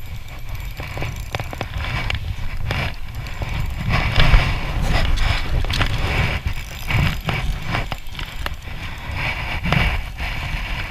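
Spinning reel being cranked as a hooked fish is played in, with short clicks over a steady noisy rumble of handling and wind on the microphone. The noise swells about four seconds in.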